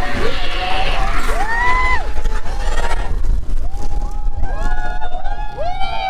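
Roller-coaster riders whooping and screaming, long drawn-out "woo" calls, a few overlapping, loudest from about four seconds in, over a steady low rumble of wind on the microphone as the train speeds along.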